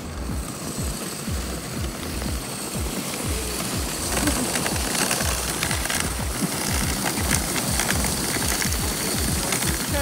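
Dog sled runners scraping over a packed snow trail while the sled rattles and jolts: a steady, rough scraping noise full of small knocks, a little louder from about four seconds in.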